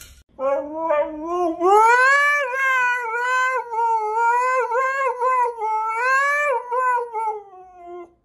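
Husky howling: one long, wavering howl that rises in pitch over the first couple of seconds, wobbles up and down, and slowly falls away near the end.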